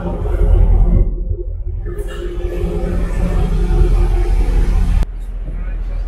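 A ferry's engine running with a steady low rumble and hum while under way. The sound drops abruptly and turns quieter about five seconds in.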